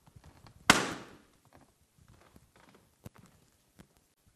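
A toy balloon bursting once, a sharp bang with a short echoing tail about three-quarters of a second in. It is popped to mark a contestant's wrong answer. A few faint knocks follow near the end.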